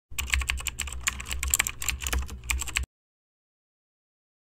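Keyboard-typing sound effect: rapid, irregular key clicks for nearly three seconds, which cut off abruptly into silence.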